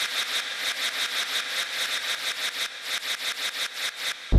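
Rapid, even clicking, about seven clicks a second over a steady hiss: a sound effect in a TV programme's animated opening sting.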